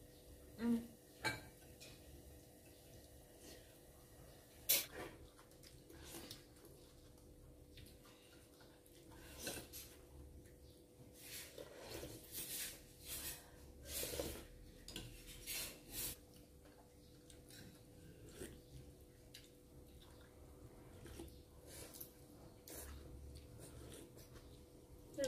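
Chopsticks and spoons tapping and clinking against bowls as two people eat fish noodle soup: scattered light clicks, busiest in the middle, with one sharper click about five seconds in.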